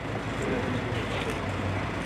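Steady outdoor background noise of nearby motor vehicles, with a low hum running under it and a few faint clicks.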